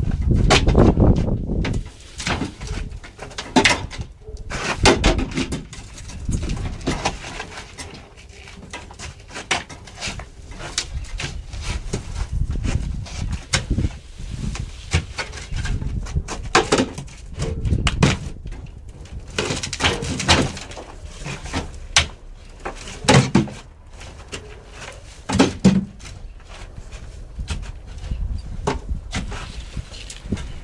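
A garden hoe digging and turning soil mixed with organic waste in an old bathtub: repeated irregular scrapes and thuds, a stroke every second or two.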